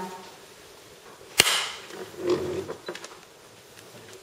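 A single sharp crack about a second and a half in, followed by a few faint, softer sounds.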